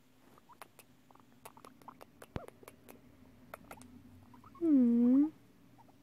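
A pet guinea pig held close, making small soft clicks and a faint low steady purr. About five seconds in, a short, loud hummed 'mm' dips and then rises in pitch.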